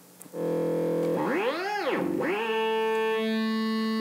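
Buchla-style analog oscillator module in a modular synthesizer sounding a steady buzzy tone rich in overtones. It comes in suddenly just after the start, glides up in pitch and back down once around the middle as a knob is turned, then holds steady.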